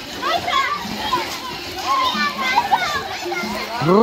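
Children shouting and calling out as they play, many high voices overlapping, with one loud drawn-out shout near the end.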